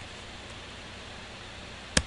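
Steady faint hiss of room tone and microphone noise, with one sharp click at the very end.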